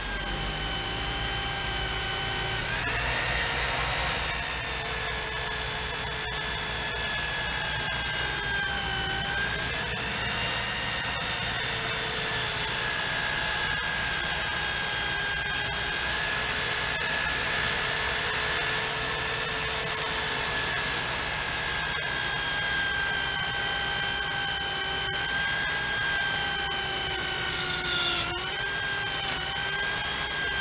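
Electric drill held in a StrongArm magnetic drill base, boring into the steel of a thin-skinned gun safe: a loud steady motor whine that grows louder a few seconds in as the bit bites, its pitch sagging briefly several times as the bit loads up in the steel.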